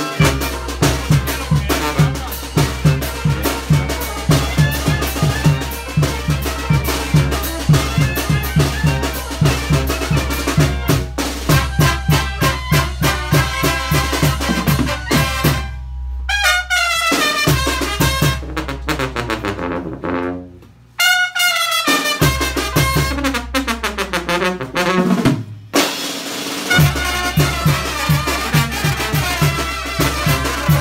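A live Mexican brass band (banda) playing: clarinets, trumpets, trombones and sousaphone over a steady bass-and-drum beat. About halfway through the beat drops out for a couple of stepping horn runs, then comes back a few seconds before the end.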